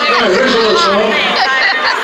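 Speech only: a man talking into a stage microphone through the PA, with chatter.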